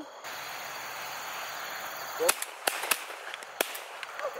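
Pigeon hunters' shotguns firing: about four sharp reports in quick succession in the second half, over a steady wind hiss.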